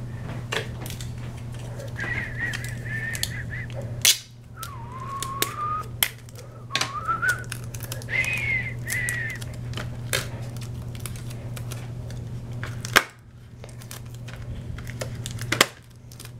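Paper rustling and crinkling with scattered clicks as hands peel an adhesive-backed paper card off a steelbook case, with a sharp snap about four seconds in and another later on. A few wavering high tones, each a second or two long, sound in the first half over a steady low hum.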